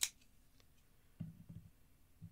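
A sharp click at the start, then a few soft, dull thuds about a second later as a folding knife is handled and set down on a cutting mat.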